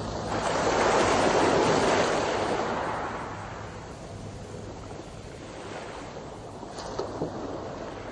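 Small waves breaking and washing up a pebble beach, one surge loudest about a second or two in, then fading, with a smaller wash near the end.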